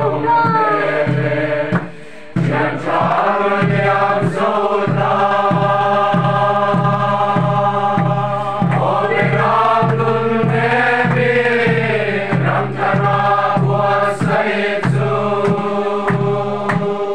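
A large mixed group of young men and women singing a slow Mizo hymn together in chorus, holding long notes over a steady beat about twice a second. The singing breaks off briefly about two seconds in.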